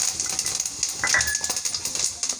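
Fennel seeds sizzling and crackling in hot oil in a kadhai: a dense, steady patter of fine pops as the seeds fry.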